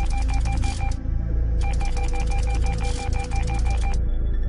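A text-typing sound effect: rapid, evenly spaced clicks with a pulsing electronic tone, in two runs with a short pause after about a second, over a low synthesized music drone.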